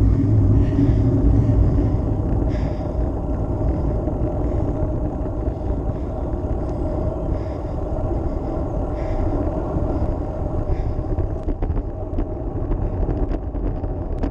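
Steady rush of wind over an action camera's microphone with road-bike tyre noise on tarmac while riding, a few faint clicks near the end.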